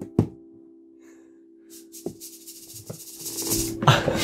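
Closing chord of an acoustic guitar ringing out and slowly fading, struck together with a last hand slap on a hard guitar case used as a drum. Two soft taps follow, and a rustle builds near the end.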